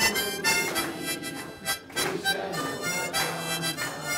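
A roomful of people singing a song together in unison, with sustained notes, while clapping along roughly twice a second.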